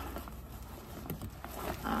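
Faint handling and rustling of a garment being wrapped for shipping, with a few light ticks, over a steady low hum. A drawn-out hummed "um" starts near the end.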